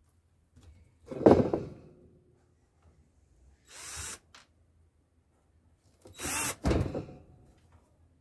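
Titan cordless drill driving screws into a wooden hive box in three short bursts, the first the loudest.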